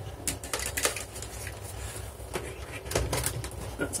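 A power supply's plug and cable being handled and plugged in: a few light clicks and knocks spread over the few seconds, over a low background rumble.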